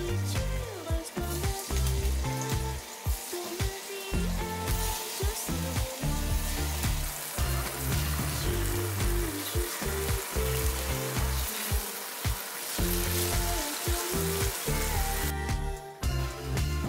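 Tofu slices sizzling as they fry in oil in a stainless steel frying pan, the hiss growing louder about a third of the way in and cutting off shortly before the end. Background music plays underneath.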